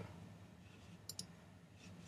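Faint computer mouse clicks over near-silent room tone: a quick double click a little after halfway, and a fainter click near the end.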